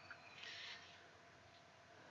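Near silence: faint room tone, with a soft brief hiss about half a second in.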